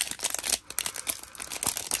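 Foil wrapper of a 2022 Zenith football card pack crinkling in the hands as it is pulled open, a dense run of quick crackles.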